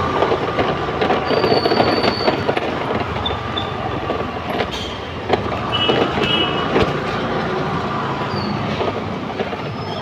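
Loud, steady street din with a constant rumble of traffic. Short high beeps come through a few times, and sharp clatters sound around the middle.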